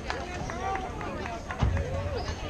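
Several voices of players and spectators calling and chattering at once around a softball field, none of it clear speech. A low thump comes about a second and a half in.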